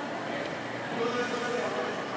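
Faint, indistinct distant talking over the steady background noise of an indoor ice rink.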